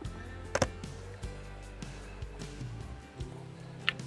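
Quiet background music throughout, with a single sharp knock about half a second in as the lid of a wooden nuc box is handled.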